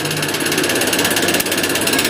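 Large electric stand fan running with a steady, rapid mechanical rattle.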